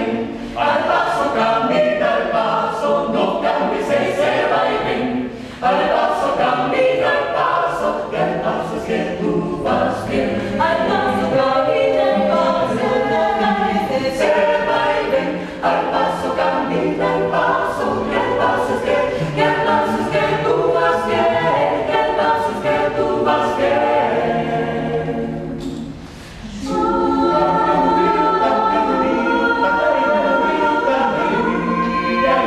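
Small mixed-voice a cappella ensemble singing a porro-jazz arrangement in close harmony, with brief breaks about five seconds in, around fifteen seconds and near twenty-six seconds.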